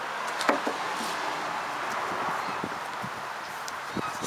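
Steady background hiss with a few faint clicks, the clearest about half a second in.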